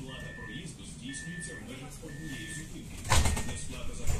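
Pesa Foxtrot tram door-closing warning: a steady high beep repeating about once a second, then the doors shutting with a loud thud about three seconds in.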